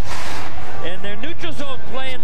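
A man's broadcast commentary voice talking, after a short burst of hiss in the first half-second.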